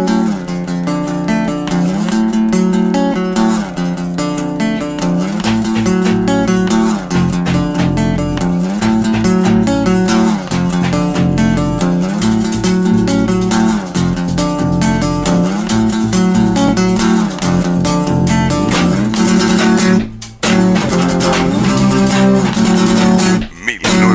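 Small band playing an instrumental intro: an acoustic guitar strums chords over an electric bass, with drums kept in time with sticks. The music breaks off briefly twice near the end.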